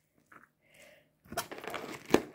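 Salted shredded white cabbage being mixed in a plastic bowl, scooped from the bottom. It makes a crisp, crackling rustle that starts about a second and a half in.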